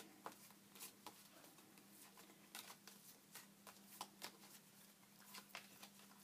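Faint, scattered soft clicks and rustles of Edward Gorey's Fantod deck being shuffled and handled by hand, over a steady low hum.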